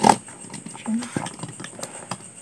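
A sharp click right at the start, then a short low hum of a woman's voice about a second in and a few faint clicks of plastic makeup tubes being handled.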